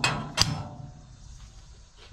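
Metal clanks from a steel hanger bracket being set on a wooden beam against a parts washer's steel lid. The first clank rings on at the start, a second, sharper clank comes about half a second in, and both fade over about a second.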